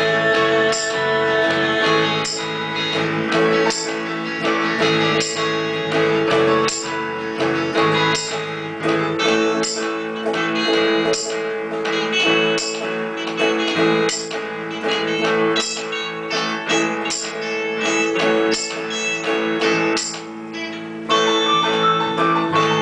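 Instrumental break of a rock band, with electric guitars and bass guitar playing through small practice amplifiers in a steady strummed rhythm.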